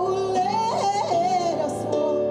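A woman singing into a microphone, holding a note that climbs about halfway through and falls back, over sustained keyboard accompaniment.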